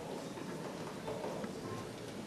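Faint hall ambience: a low murmur of voices and light rustling, with no music playing.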